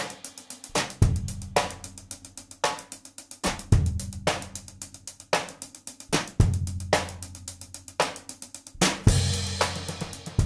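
Mapex drum kit played with sticks in a groove: kick and snare accents every half second or so, with busy hi-hat and cymbal strokes between them and low notes ringing on under the accents.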